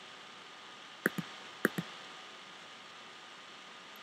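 Four computer mouse clicks in two quick pairs, about a second and a second and a half in, over a faint steady hiss.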